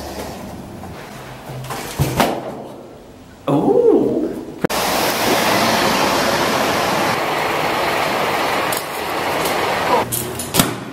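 BMX bike being ridden over brick paving, with wind rushing over the camera microphone: a steady loud rushing noise that starts suddenly about halfway through. Before it, a few knocks as the bike is taken through a doorway.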